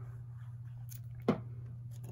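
Faint handling of paper pieces as they are set onto a card base, over a steady low electrical hum, with one brief sharp sound a little over a second in.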